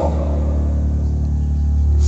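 Instrumental backing track holding a steady low chord with a deep bass tone, in a pause between sung lines.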